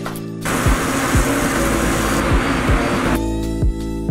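Music with a regular kick-drum beat, overlaid from about half a second in until shortly before the end by a loud, even hiss.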